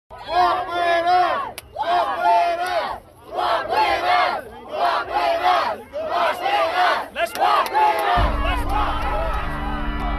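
A large protest crowd chanting a short slogan in unison, about six times in a row, each chant a little over a second long. A deep, steady bass music tone comes in about eight seconds in, under the last chant.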